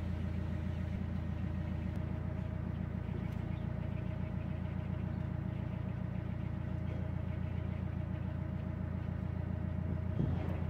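Narrowboat diesel engine running steadily at cruising pace, a deep even throb with a faint steady hum above it.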